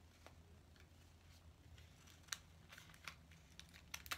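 Faint handling of cardboard and clear adhesive tape: a scatter of small, sharp clicks and crinkles as the pieces are pressed and fitted together, the sharpest about two and a half seconds in, over a low steady hum.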